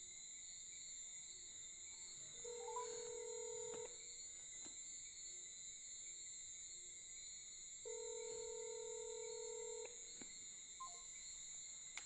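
Phone ringback tone from an outgoing call: two rings, each a second or two long, about five seconds apart. A steady high-pitched chirring of crickets runs underneath.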